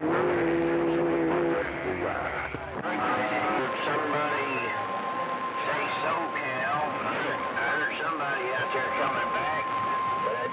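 CB radio receiving channel 28 skip: static hiss with faint, garbled voices of distant stations. A steady low tone sounds for the first second and a half, and a steady whistle sits under the voices from about four seconds in.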